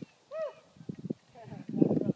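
A person's short wordless calls, one early and a louder one near the end, with a few sharp knocks in between.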